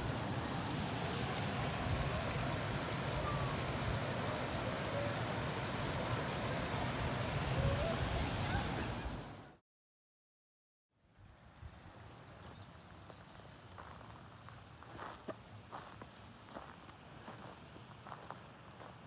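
Shallow mountain stream flowing over rocks, a steady rushing that cuts off abruptly about halfway through. After a second of silence a much quieter stretch follows with scattered light clicks and knocks.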